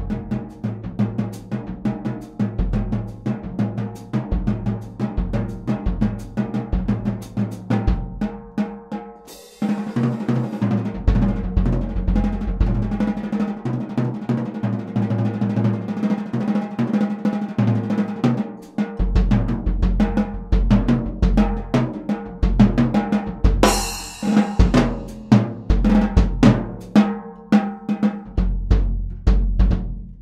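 Early-1960s Slingerland drum kit (20" bass drum, 12" and 14" toms, mahogany and poplar shells, brass hoops) with a Craviotto titanium snare, played as a groove at a medium tuning, with unmuffled toms and a pinstripe bass drum head. A cymbal crash comes about ten seconds in and again about two-thirds through, and the bass drum plays more heavily after the first crash.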